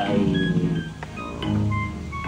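Background music with instruments, possibly a guitar-like plucked string.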